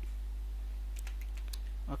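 Computer keyboard being typed: three keystrokes between about one and one and a half seconds in, over a steady low hum.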